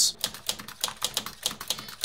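Typewriter sound effect: a rapid, even run of key clicks as a title is typed out letter by letter.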